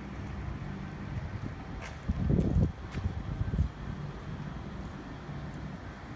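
Wind buffeting the microphone in loud gusts about two to three and a half seconds in, over a steady low hum.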